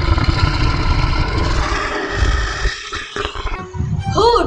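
A lion roar sound effect: one long, rough roar that weakens and trails off about three seconds in.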